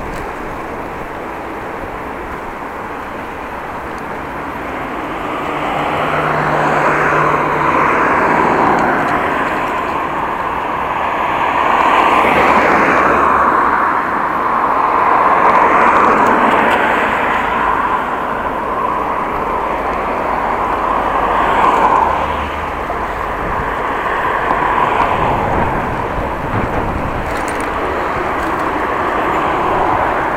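Road and traffic noise from a moving bicycle, a steady rushing that swells several times as cars pass close by, one of them about halfway through.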